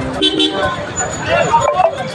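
A vehicle horn toots briefly near the start, over the voices of a gathered crowd and passing road traffic.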